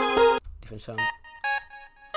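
FL Studio Morphine synth playing a melody of layered chords over a deep bass, which stops abruptly about half a second in. After a spoken 'so', a few short single synth notes sound one at a time, like notes being previewed in the piano roll.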